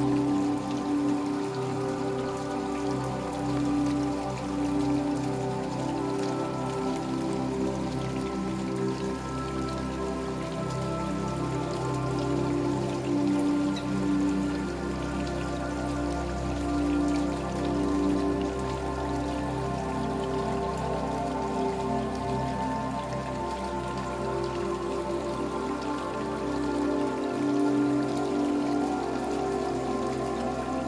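Steady rain falling, mixed with a slow, calm new-age music track of long held notes.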